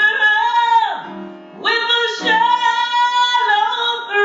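A woman singing a gospel song into a microphone with piano accompaniment, holding long notes, with a brief softer pause about a second in before the next held note.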